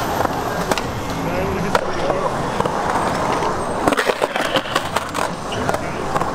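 Skateboard wheels rolling on the concrete of a skatepark bowl, a steady rumble, then a quick run of sharp clacks and knocks from the board about four seconds in.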